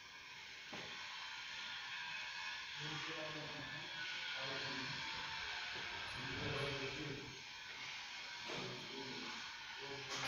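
A steady hiss with an indistinct voice over it from about three seconds in, too unclear for words.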